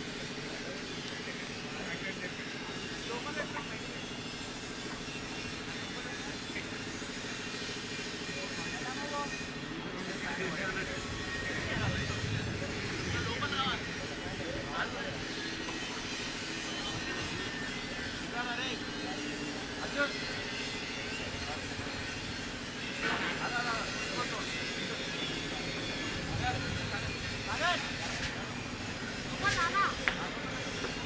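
Indistinct distant voices calling across an open field over a steady low machine-like hum, with a few louder calls about a third of the way in and again near the end.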